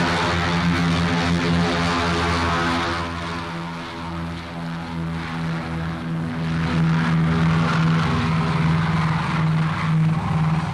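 Propeller-driven piston engines of a B-29 Superfortress bomber droning steadily. The drone dips a little in loudness about three seconds in, then swells again.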